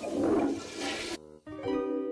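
Cartoon soundtrack: a rushing noise effect with a wavering pitch that cuts off abruptly a little past a second in, then light plucked-string music begins.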